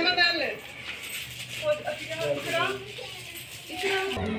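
People talking in short bursts, with a faint jingling of bangles between.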